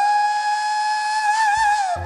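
Saxophone holding one long, steady high note with almost nothing beneath it, the note ending just before the full band comes back in.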